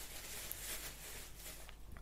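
Faint rustling and crinkling of a plastic carrier bag, with a few scattered soft ticks, as a dog moves about inside it.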